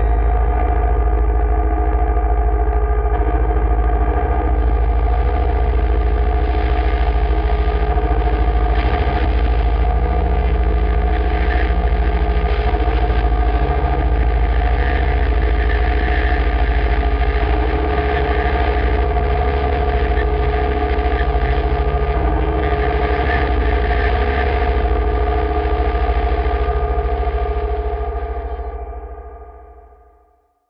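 The closing drone of a doom/sludge metal track: sustained, effects-laden distorted guitar notes held over a deep, steady low rumble, with no drums. It fades out over the last couple of seconds, ending the song.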